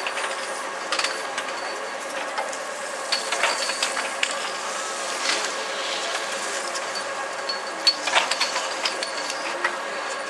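Chairlift machinery running: a steady mechanical hum with irregular clacks and rattles, the loudest a cluster about eight seconds in.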